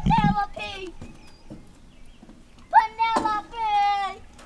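A child's high-pitched voice shouting, a short call at the start and then a long drawn-out call near the end.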